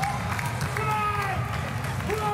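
Drawn-out shouts from a person's voice, each falling in pitch, over steady crowd noise in a large hall.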